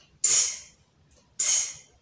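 A woman saying the letter sound /t/ twice, about a second apart: each a short, breathy, aspirated puff of air with no voiced vowel after it.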